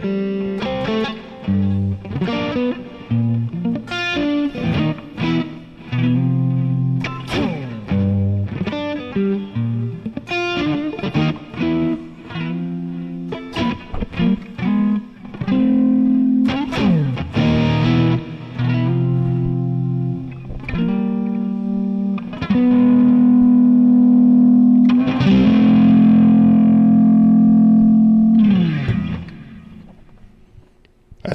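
Fender Stratocaster electric guitar with Lace Sensor pickups, played through an amp setup with effects. It runs through a chord progression with single-note fills and sliding notes, then ends on a long held chord that fades out near the end.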